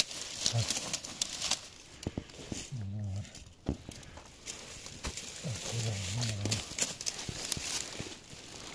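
Dry leaf litter, twigs and wicker baskets crackling and clicking as they are handled. A man's low voice is heard twice, briefly, about three and six seconds in.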